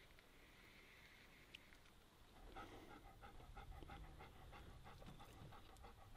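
A dog panting faintly and rhythmically, about four breaths a second, starting a couple of seconds in over near silence.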